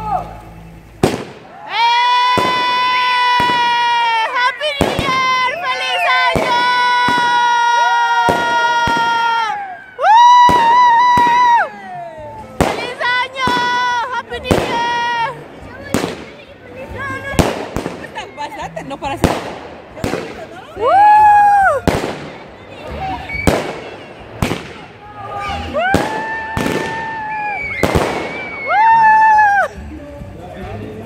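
Whistling fireworks going off one after another: long shrill whistles of one to four seconds, many starting with a rising swoop, amid a steady run of sharp bangs and crackles.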